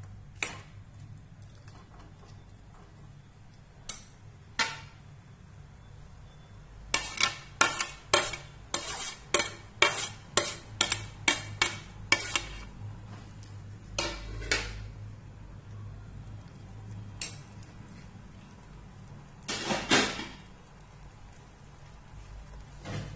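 Steel ladle stirring a simmering vegetable curry in a pan: a run of sharp clinks and scrapes against the pan, about two a second for several seconds, then a few single clinks and a louder clatter near the end.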